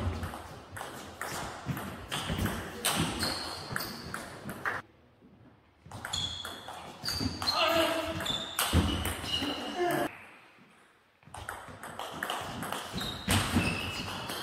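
Table tennis rallies: the plastic ball clicking rapidly back and forth off the bats and the table, with voices in the hall. The play stops twice, briefly going quiet about five seconds in and again about ten seconds in.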